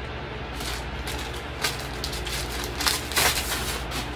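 Several short rustles of clothes being handled, over a steady low hum.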